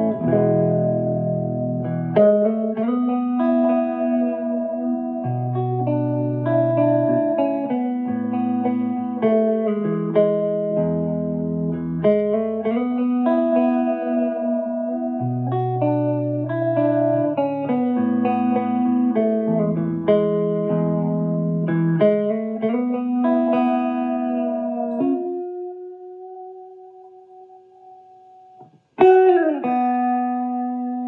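Clean electric guitar, an Epiphone Wildkat's neck dog-ear P90 through a Marshall Origin 50 with tape slap-back echo and reverb, playing a slow, repeating chord riff. About 25 seconds in a chord is held and rings out, fading away. Near the end a new chord is struck with its pitch bent by the Bigsby vibrato.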